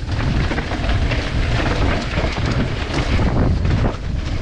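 Mountain bike riding fast down a dirt trail, heard from a camera mounted on the bike: loud wind rush on the microphone with tyre noise and the frequent rattle and knocks of the bike over the bumps.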